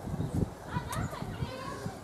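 Distant children's voices calling out while playing, high and faint, with a few low thumps of footsteps in the first half second.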